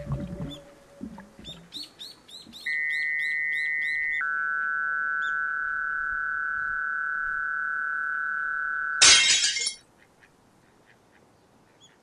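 Cartoon sound effects: a run of rapid bird-like chirps about five a second, overlapped by a steady, high electronic tone that steps down in pitch once and holds for several seconds. The tone is cut off by a short, loud crash like breaking glass.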